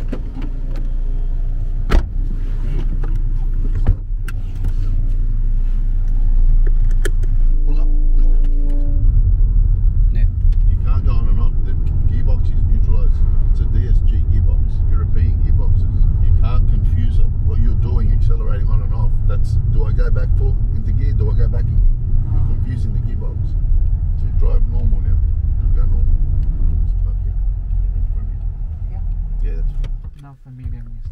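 Cabin noise inside a mid-2000s Audi hatchback. A few sharp knocks of doors shutting come in the first seconds. Then a steady low rumble of engine and road runs on, louder once the car pulls away about nine seconds in.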